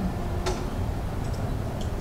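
A single sharp click about half a second in, as the projected video is paused, followed by a few fainter ticks, over a steady low rumble of room noise.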